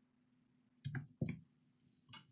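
Two short clicks about a third of a second apart, a little under halfway through, as a laptop's metal CPU heatsink is lifted off the motherboard and handled.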